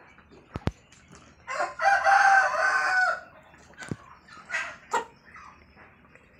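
A rooster crows once, a steady call lasting about a second and a half, among shorter clucks from a flock of white broiler chickens. A sharp click comes shortly before the crow and another shortly after it.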